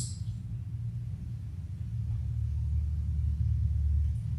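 A low, steady rumble with no speech, growing louder in the second half.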